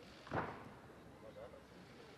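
A single dull thud about a third of a second in: a gymnast's feet landing on the balance beam, heard over faint arena ambience.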